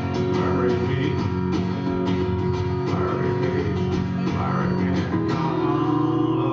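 Acoustic guitar strummed in a steady rhythm, sustained chords ringing, in an instrumental passage of a live song without vocals.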